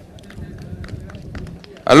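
A pause in a man's speech over a public-address microphone: faint outdoor background with a low steady hum and small scattered clicks, then his amplified voice comes in loudly near the end.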